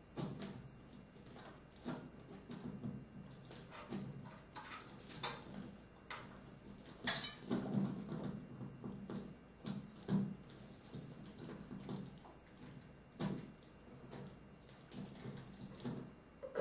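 Irregular small metal clicks, taps and rattles of a chandelier and its mounting bracket being handled overhead as a screw is driven by hand into the ceiling box, with low handling noise between the clicks; the sharpest clicks come about 7 and 10 seconds in.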